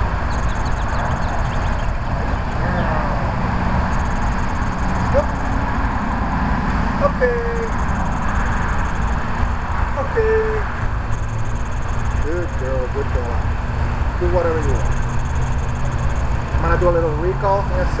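A steady low rumble of outdoor background noise throughout, with a few short, soft voice sounds now and then.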